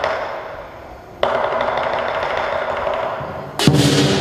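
Lion dance percussion: crashes of cymbals and gong that ring out and fade, a fresh crash about a second in that rings for over two seconds, then a louder stroke with a deeper tone near the end.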